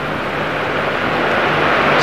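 A steady rushing background noise with a faint low hum underneath, slowly growing louder.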